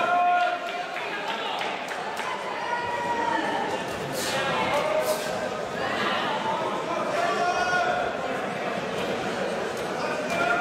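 Boxing spectators and cornermen shouting, several voices over one another, with no clear words. Two brief sharp sounds come about four and five seconds in.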